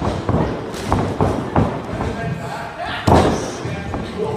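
Wrestlers' feet and bodies thudding on a wrestling ring's mat in a grappling drill: about six irregular thuds, the loudest about three seconds in.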